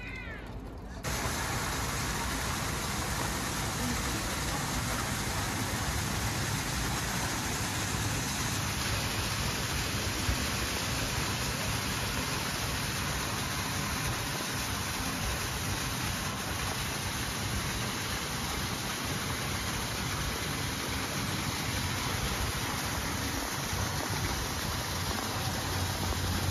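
Steady rush of water falling from a garden waterfall into a pond, starting abruptly about a second in.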